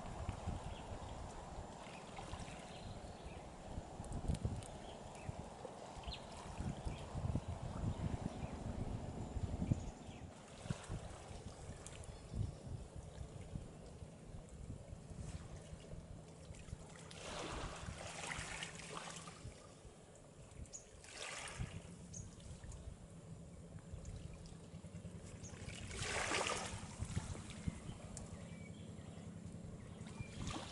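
Small waves washing in on the shore, with a low uneven rumble through the first ten seconds. Several louder swashes of a second or two come in the second half.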